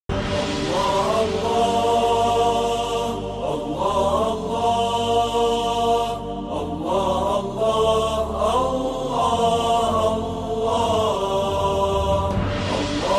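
A voice chanting in long, held notes that slide from one pitch to the next, over a steady low drone.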